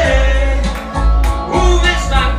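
Karaoke: a man singing through a handheld microphone over a loud backing track with a heavy bass beat.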